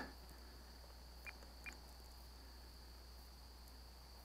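Near silence with a faint steady hum, broken about a second in by two short, high, even-pitched beeps a fraction of a second apart, typical of an RC transmitter's trim buttons being pressed.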